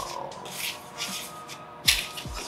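Wire whisk stirring dry cornbread mix in a plastic bowl: a scratchy, rasping rub in short strokes, with a sharp knock near the end. A bass beat from background music runs underneath.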